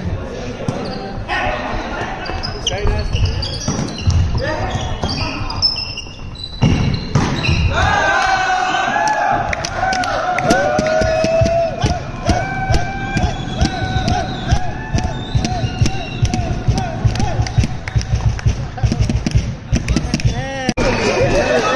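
Volleyball play in an echoing sports hall: repeated thuds of the ball and feet on the court floor, short high squeaks of shoes, and players and spectators shouting, with one long held call from about eight seconds in.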